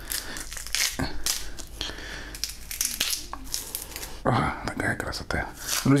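Dried salted smelt being torn open by hand: dry crackling and tearing of the stiff skin and flesh as the fish is pulled apart.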